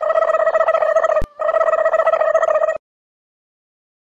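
A buzzing, trilling sound effect in two stretches with a short break between them, each a steady mid-pitched tone that flutters rapidly. It cuts off sharply after nearly three seconds.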